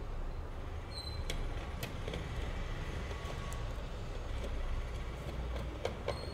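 Faint, scattered clicks of a screwdriver working the screws of a terminal block on a switch-mode power supply board, over a steady low rumble of background noise.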